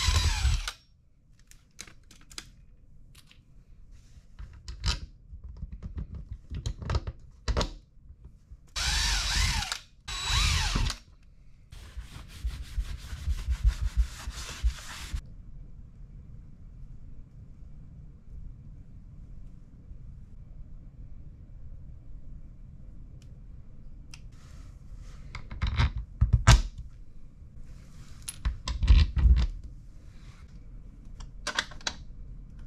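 A DeWalt cordless drill runs in several short bursts, its motor speeding up and slowing down as it drives screws into a plastic toilet flange on a sump pit lid. Quieter handling and tool noises come between the bursts.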